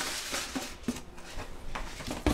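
Faint handling sounds in a kitchen: a few light clicks and knocks as dishes and items are shifted about.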